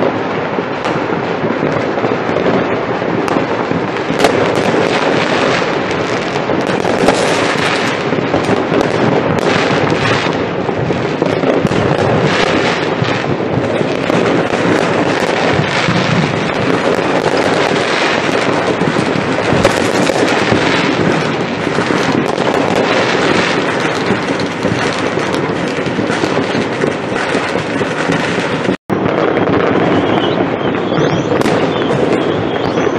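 Fireworks and firecrackers going off in a dense, continuous barrage of crackles and bangs from many places at once. The sound cuts out for an instant near the end.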